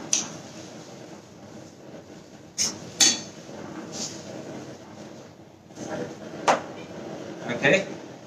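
Metal spoon clinking and scraping against a wok as spinach is stirred in boiling salted water: a few sharp clinks spread out over a steady hiss.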